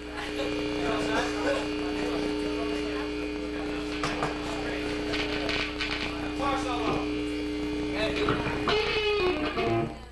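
Electric guitar amplifier buzzing with a steady hum of two held tones, coming on at the start and holding throughout, under indistinct crowd chatter between songs.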